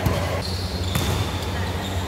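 A basketball thudding on an indoor court, two knocks about a second apart, during live play.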